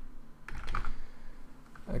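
Computer keyboard typing: a few quick keystrokes about halfway in and another near the end as a short command is entered.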